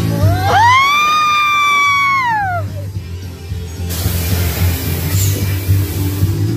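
Loud soundtrack of a 4D show film played through the theatre speakers: music over a deep steady rumble. Near the start a long high tone rises, holds for about two seconds and falls away, and a rushing hiss comes in about four seconds in.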